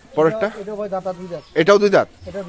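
A man's voice talking, with no other sound clearly standing out.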